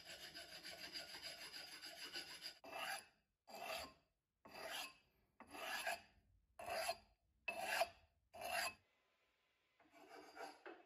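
Unglazed edge of a glazed ceramic stove tile being rubbed by hand against a flat abrasive piece to smooth and true it: a continuous scraping at first, then seven separate strokes about one a second that stop shortly before the end.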